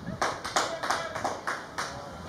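Hand clapping: a run of sharp, slightly uneven claps, about three a second.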